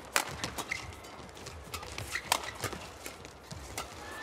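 Badminton doubles rally: sharp racket strikes on the shuttlecock in quick exchange, the loudest just after the start, with short squeaks of shoes on the court mat between them.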